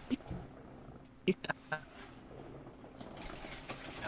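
A person's quiet, breathy laughter: a few short bursts between one and two seconds in, in a pause in the talk.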